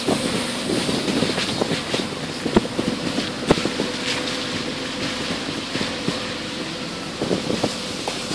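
A vehicle travelling along a rough, muddy dirt road: a steady engine tone under wind noise on the microphone, with a few sharp knocks, the loudest about two and a half and three and a half seconds in.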